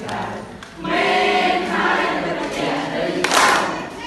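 A group of voices singing a Khmer children's song together, with a brief loud burst near the end.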